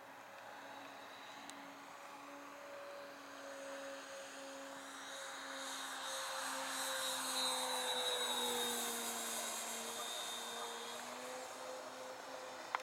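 Twin-engine Hangar 9 Twin Otter radio-controlled model aircraft making a low pass: the propeller hum and motor whine grow louder, peak past the middle, drop in pitch as the plane goes by, then fade as it climbs away.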